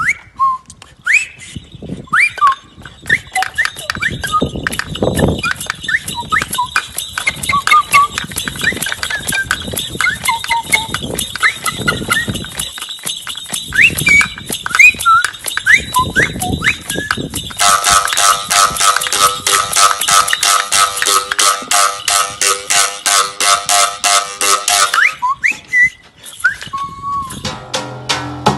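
A handheld bird-call whistle blown in short rising and falling chirps and trills over a rapid, even clicking beat. About eighteen seconds in it changes to a loud, harsh buzzing tone with a fast rattle for several seconds, then goes back to chirps.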